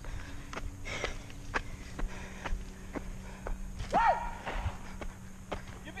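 Mountain bike running down a rough dirt trail: irregular sharp knocks and rattles from the bike over bumps, roughly two a second, over a steady low hum.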